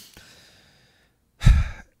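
A man sighs: a faint breath in over the first second, then a short, loud exhale with a little voice in it about one and a half seconds in.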